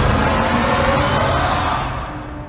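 A loud, dense wash of trailer sound design, mostly noise with faint pitched tones. Its high end cuts off suddenly just before the end.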